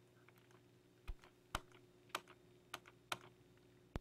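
A few isolated clicks of laptop keys in a quiet room, about six of them at uneven intervals beginning about a second in, the last one sharp at the very end. A faint steady electrical hum sits underneath.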